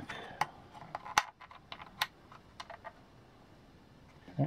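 Hard plastic toy parts of a GI Joe Cobra Piranha clicking and tapping against each other as small pieces are handled and fitted onto its plastic hull: a handful of sharp, irregular clicks, the loudest a little over a second in, dying away after about three seconds.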